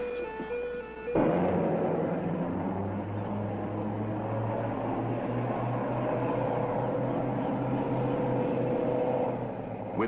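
A short run of electronic beeping tones, cut off about a second in by the steady drone of a rescue boat's engines running, a low hum with a rough wash of noise over it.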